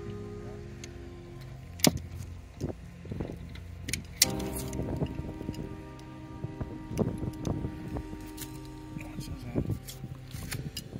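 Background music with scattered sharp metallic clicks and knocks from pliers and hands working the Airstream trailer's entry-door handle and lock, whose tumblers have broken. The loudest clicks come about two and about four seconds in.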